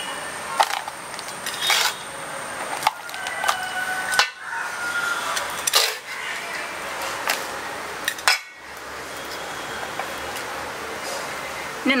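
Potting mix being scooped with a trowel and tipped into a small plastic pot: gritty scraping and crunching of soil, with irregular clicks and taps of the trowel against the pot and bowl.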